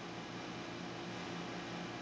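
Steady room background: a low hum with an even hiss, without distinct stirring sounds.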